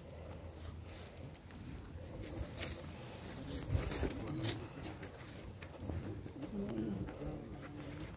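Low, soft cooing calls of a bird, twice, around the middle and again near the end, over faint murmuring voices and a few light knocks.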